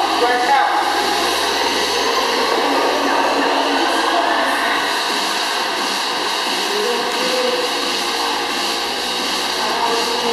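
Steady whooshing of an exercise machine's air-resistance fan being worked without a break, with indistinct voices behind it.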